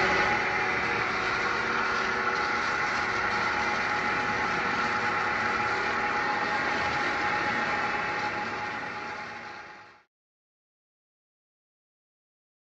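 Steady hiss of water spray washing a tack truck's tank and fittings, rinsing off tack loosened by asphalt solvent, over a running engine's steady hum. It fades and cuts off about ten seconds in.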